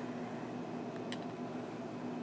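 Quiet room tone with a steady low hum, and one short faint click about a second in from lips puffing on a tobacco pipe.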